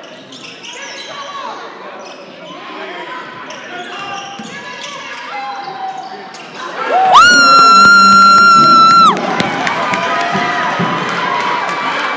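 Basketball being dribbled and shoes squeaking on a hardwood court. About seven seconds in, a loud horn blast swoops up into a steady pitch, holds for about two seconds and cuts off. The crowd then cheers a made three-pointer.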